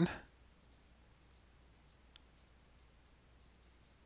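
Faint computer mouse clicks, a few scattered sharp ticks over quiet room tone.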